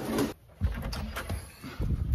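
Footsteps and bumps of a handheld phone as someone walks indoors: a few dull low thuds, one about half a second in and more near the end, with faint clicks between them.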